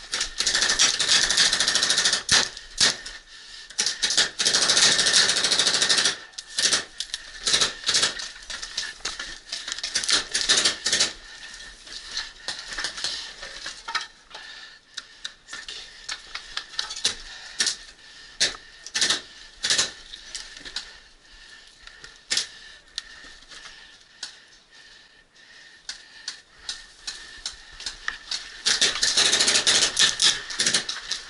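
Paintball markers firing in rapid strings of sharp pops. The shooting is dense for about the first six seconds and again near the end, with scattered single shots in between.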